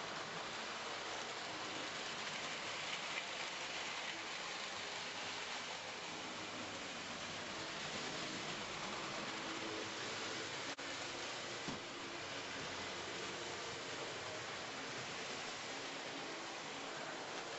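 Model railway trains running on the layout: a steady whirring hiss of small electric motors and wheels on track, with faint steady motor tones.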